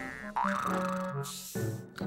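Cartoon background music with a springy boing sound effect: a short rising glide about a third of a second in, then held notes, with another sudden change around one and a half seconds in.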